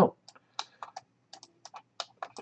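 Computer keyboard and mouse clicking: about ten short, irregularly spaced clicks.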